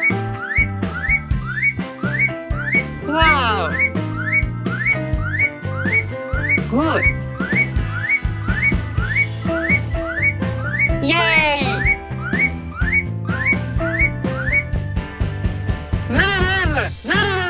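Cartoon background music with a steady beat and a bright, whistle-like melody of short rising notes about twice a second. Three swooping glides in pitch cut across it about 3, 7 and 11 seconds in.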